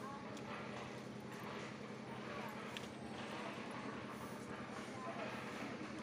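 Quiet background: a steady low hum with faint distant voices and a few light ticks.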